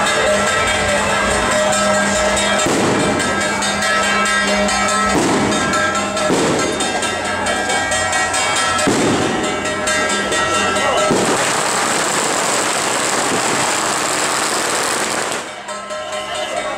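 Strings of firecrackers crackling in rapid, continuous volleys over a noisy crowd with music playing. The firing is heaviest in the last few seconds and stops abruptly just before the end.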